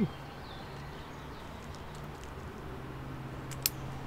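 Quiet background with a faint low steady hum. About three and a half seconds in comes one sharp click from the cat's blue harness being handled as it is fastened.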